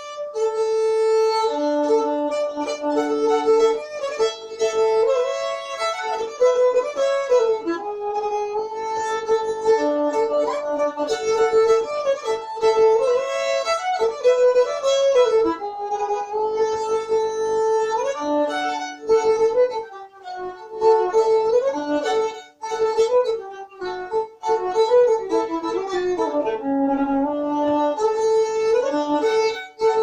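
Solo violin playing a Swedish sixteenth-note polska from Bingsjö in a brisk, steady rhythm, often sounding two strings together. It is played with the rocking 'Bingsjö roll' bow stroke.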